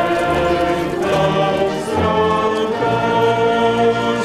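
A choir singing a slow church hymn, long held notes moving to a new chord about once a second.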